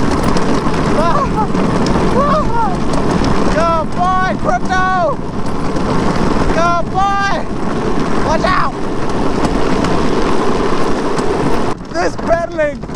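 Steady rush of wind on the microphone and the drift trike's wheels rolling on asphalt downhill, with several short, high-pitched cries that rise and fall over it.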